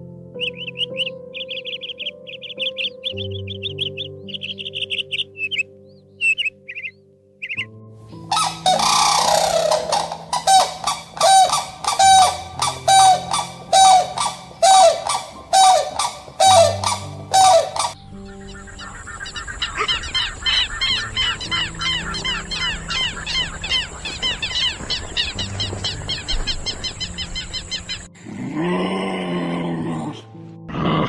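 Grey crowned crane giving a loud series of honking calls, about one a second, over soft piano music. Before it come rapid high chirping notes, and after it a fast high chattering bird call with a thin steady whistle.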